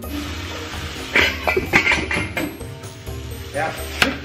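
Metal clinks and knocks of stainless-steel saucepans handling freshly boiled potatoes, over steady background music.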